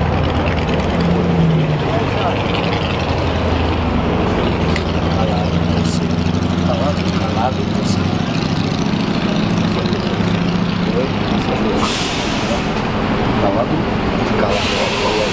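A motor vehicle's engine running steadily close by, with a short hiss about twelve seconds in and indistinct voices underneath.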